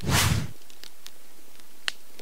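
Logo-intro sound effects: a whooshing sweep that fades out within the first half second, the last of a quick series. It is followed by a steady hiss with a few sharp crackles.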